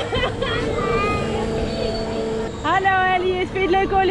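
Wind rushing over the microphone and a steady hum from the turning fairground ride. A high voice, wordless calls from a child or the mother, comes in over it about two and a half seconds in.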